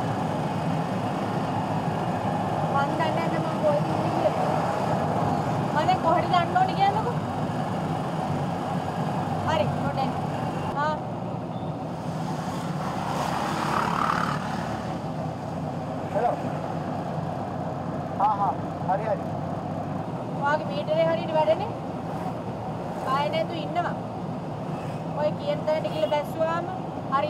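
Auto-rickshaw engine running steadily, with intermittent talking over it.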